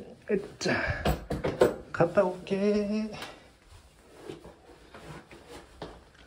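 A man's voice speaking briefly, with several sharp clicks and knocks of handling in the first seconds, then quieter rustling in a small, echoey room.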